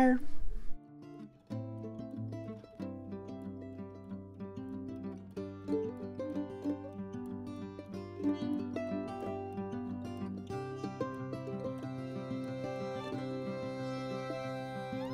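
Light instrumental background music, led by plucked strings, plays steadily.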